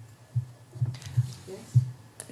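A run of low, muffled thumps, about four a second at uneven spacing, with a quiet spoken "yes" near the end.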